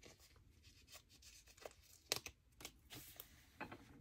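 Faint paper-handling sounds: a few soft clicks and rustles as a sticker tab is peeled from its sheet and pressed onto the edge of a planner page, with near silence between.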